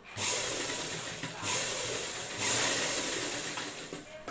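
Pioneer sewing machine running and stitching fabric, picking up speed in three surges before it stops just before the end.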